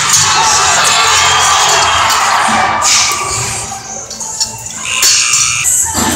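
Arena music over a cheering crowd in a large indoor hall. The cheering is densest for the first few seconds and then fades back, leaving the music.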